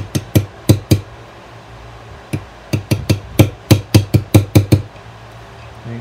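Light hammer taps driving a new water pump shaft seal into a Husaberg FE570 engine's case cover. A quick run of about five sharp taps comes in the first second, then a longer run of about a dozen from just past two seconds to nearly five, seating the seal, which had gone in a little crooked.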